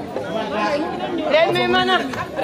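Several people's voices talking and calling out over one another, with no drumming.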